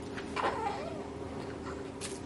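A baby's short, high coo about half a second in, wavering and falling in pitch, over a steady low hum.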